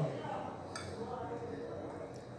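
Quiet room tone after a word trails off at the very start, with one light clink of a metal fork against a plate a little under a second in.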